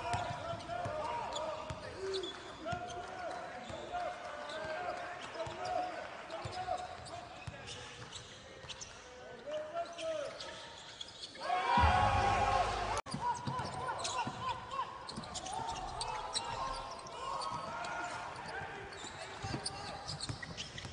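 Basketball game court sound: the ball bouncing on the hardwood and many short sneaker squeaks, with indistinct voices. A louder stretch of squeaks and thuds comes about twelve seconds in, and the sound drops out for an instant just after.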